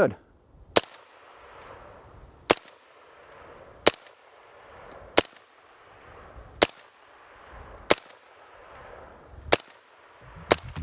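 Suppressed AR-15 (Midwest Industries rifle with a Silencer Inc. 5.56 suppressor) firing M855 ball in slow semi-automatic fire. Seven sharp shots come about a second and a half apart.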